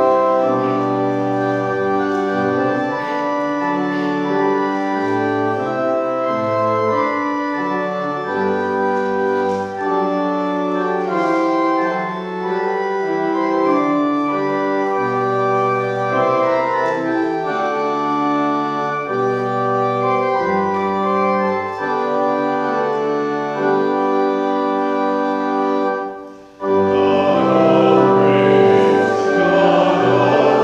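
Church organ playing a hymn introduction in sustained chords over a moving bass line. It pauses briefly near the end, then the congregation starts singing the hymn with the organ.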